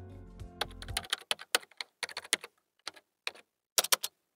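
Computer keyboard typing: a run of quick, irregular keystroke clicks with short pauses. The intro music stops about a second in.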